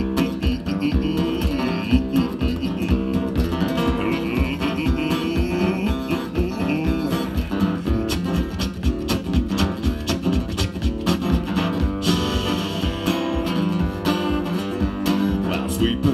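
Acoustic guitar strummed in a steady, driving rhythm with no singing: an instrumental break in a folk song. The strumming pattern is the song's "paddle rhythm", meant to evoke a paddle steamer's paddle wheels churning the water.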